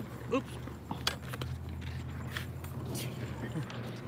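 A few light clicks and knocks from a part being worked and snapped into place by hand, over a low steady hum.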